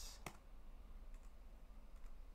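Computer keyboard keys pressed a few times: one sharp click just after the start, then a couple of faint ones, over a faint low hum.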